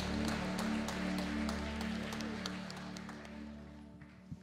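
A live band holds a closing chord that slowly fades, while a congregation applauds. The clapping and the chord both die away toward the end.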